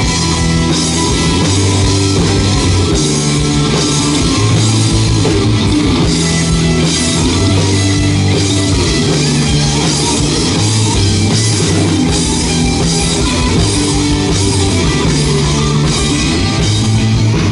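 Live rock band playing: electric guitars, electric bass and drum kit, loud and steady, with a repeating bass line under a steady beat.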